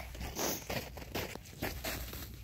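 A few short rustling, crunching scrapes close to the microphone, each a fraction of a second long.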